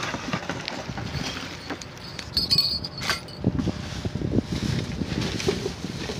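Plastic bags and foil gift wrap crinkling and rustling in irregular bursts as trash is rummaged through by hand, heavier from about halfway through.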